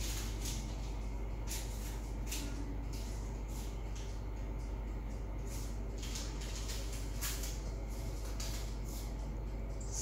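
Faint, irregular soft rustles and light ticks of hands spreading cut raw puff pastry on a metal baking tray, over a steady low room hum.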